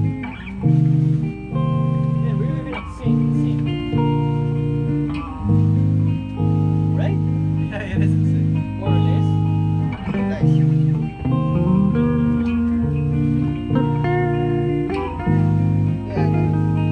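Electric guitars playing a slow chord progression of a song, each chord held about a second, with a low bass line under higher picked notes.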